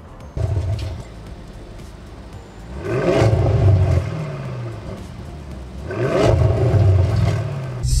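Audi RS6's twin-turbo V8 idling through a Milltek cat-back exhaust, revved up twice, about three seconds apart, each rev rising and then falling back to idle.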